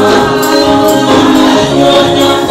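Gospel music: voices singing together over a tambourine jingling in a steady beat.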